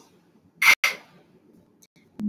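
A woman sounds out the isolated /k/ phoneme twice: two short, breathy "k" bursts about a fifth of a second apart, with no vowel after them.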